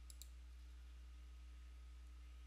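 Near silence with a steady low electrical hum, broken twice just after the start by faint, sharp computer mouse clicks.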